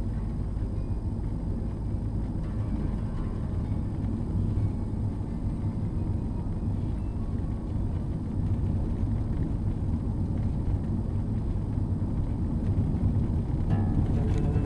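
Car driving along a paved road, heard from inside the cabin: a steady low rumble of engine and tyre noise.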